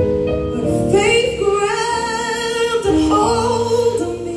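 Recorded gospel song played over loudspeakers: a woman's voice rises about a second in into one long held note with a wavering pitch, over instrumental accompaniment.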